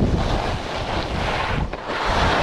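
Wind rushing over a body-worn action camera's microphone during a ski descent, mixed with the hiss of skis running over firm, packed snow. The noise eases briefly near the end, then picks up again.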